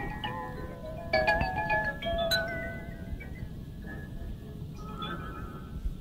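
Drum corps front ensemble playing keyboard mallet percussion, xylophone and marimba: struck, ringing notes, with sharper attacks about one second and two and a half seconds in. It is heard from an old 1984 percussion tape recording.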